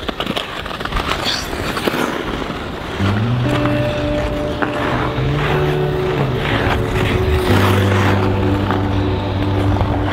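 Hiss and scrapes of ice skate blades gliding over snowy rink ice. About three seconds in, background music with long held low notes comes in and carries on over it.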